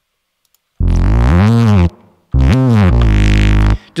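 Ableton Operator synth bass patch played through an effect chain: two low notes, each swooping up and back down in pitch. Ableton's Reverb is switched on, leaving a short tail after each note.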